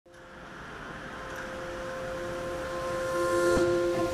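Background music fading in: a held chord that swells in loudness, with a new low note entering about three seconds in and a soft hit just before the end.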